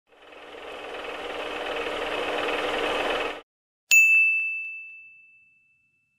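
Logo sting sound effect: a swell of noise that builds for about three seconds and cuts off sharply, then a single bright ding that rings out and fades.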